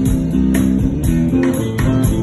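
Live band music: sustained guitar-like notes over drums keeping a steady beat of about two strokes a second.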